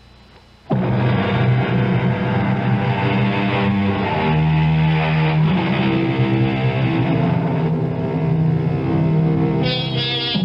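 Loud dramatic radio-drama bridge music with sustained low notes, coming in suddenly under a second in after a faint hiss.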